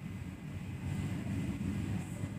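A low, steady background rumble with no distinct events, getting slightly louder about a second in.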